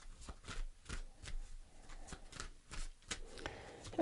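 A tarot deck being shuffled by hand: quiet, irregular clicks and flicks of cards.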